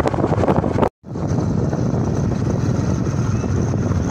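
Wind buffeting the microphone over a motorcycle's running engine during a ride on a dirt road, broken by a brief silent gap about a second in.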